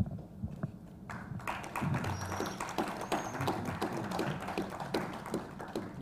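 Clapping from a small audience, starting about a second in and going on steadily as an irregular patter of hand claps. A single thump comes at the very start.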